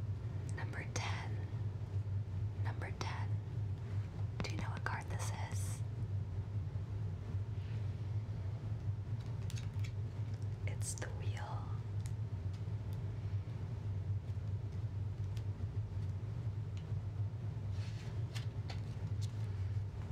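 A woman whispering softly in short spells, with a few brief rustles of cards or paper, over a steady low hum.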